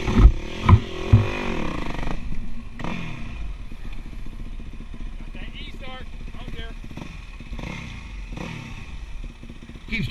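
Yamaha dirt bike engine revving, its pitch rising and falling, with three loud thumps in the first second or so; then it settles to a steady idle with a few short throttle blips.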